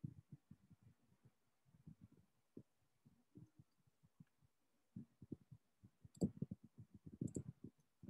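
Near silence with faint, irregular clicks and taps, a few slightly louder ones bunched near the end.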